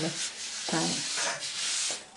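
Dry scraping rub of a wooden flooring offcut handled close to the microphone, strongest near the end.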